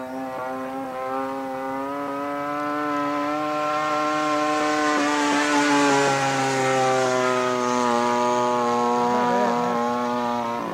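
RCGF 30cc two-stroke gas engine with a Pitts-style muffler and an 18x8 propeller, running at steady throttle on a radio-controlled Sbach 342 in flight. The drone grows louder toward the middle and its pitch drops a little about halfway through.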